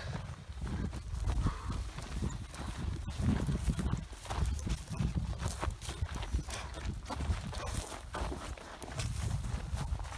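Footsteps walking through dry grass and brush, an irregular run of steps and swishes, over a steady low rumble.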